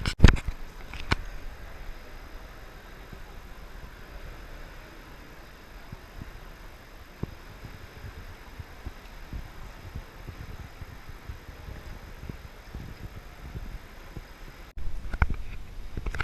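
Low, steady rumble of an indoor pool hall's room noise with scattered soft thumps, and a few sharp knocks in the first second. Near the end the sound cuts abruptly to a louder noisy stretch.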